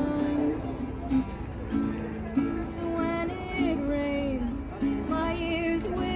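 A woman singing long held, wavering notes, accompanied by an acoustic guitar.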